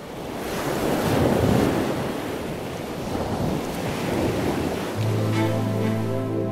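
A rushing noise like wind swells up, loudest about a second in. About five seconds in, a held music chord with a low bass note enters beneath it as the song's intro begins.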